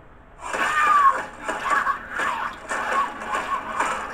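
High-pitched screaming: a string of shrill, wavering cries that starts about half a second in and keeps going.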